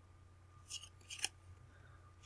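Oracle cards sliding against each other in the hands: two short, faint swishes about half a second apart.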